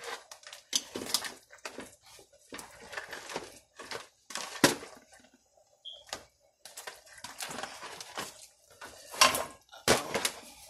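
Hard snow crab leg shells and kitchen tongs knocking and clattering against a speckled enamel stockpot as the legs are pushed down into the seafood boil. Irregular knocks, the sharpest about halfway through and shortly before the end.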